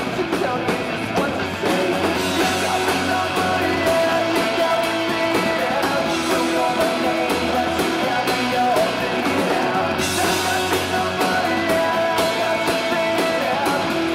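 Drum kit played live along to a rock backing track with electric guitar and singing, with a steady run of drum and cymbal hits.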